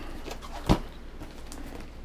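A cardboard mailer being cut open with a knife: faint scraping and handling noise, with one sharp knock about two-thirds of a second in.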